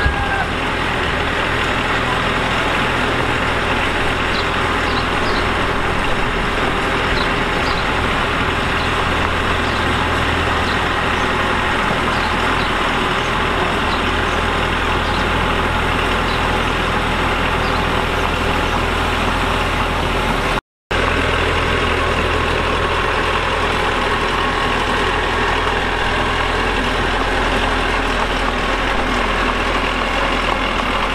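Small crawler dozer's diesel engine running steadily under load as it pushes soil and stone with its blade. The sound cuts out for a split second about two-thirds of the way through.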